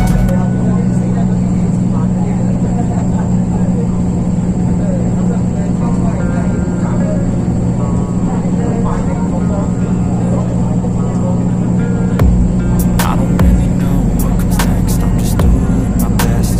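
Steady low drone of a vehicle's engine and road noise heard from inside the moving vehicle, with several sharp clicks in the last few seconds.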